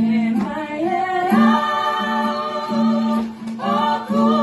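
Tongan gospel song playing, with women's voices singing along in long held notes that slide from one pitch to the next.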